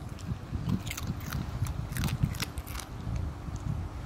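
A pet chewing a piece of bacon, with irregular wet, crunchy bites close by.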